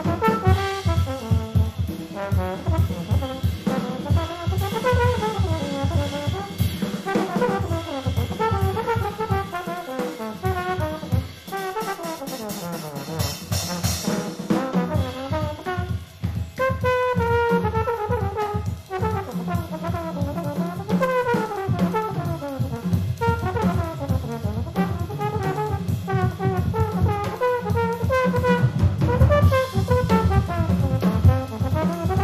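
A jazz big band playing live, recorded straight off the soundboard: trumpets and trombones play moving ensemble lines over a steady bass and drum pulse.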